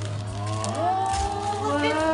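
Wrapping paper being torn and rustled as a gift is unwrapped, under drawn-out voices cooing with long held vowels that glide in pitch from about half a second in, over a steady low hum.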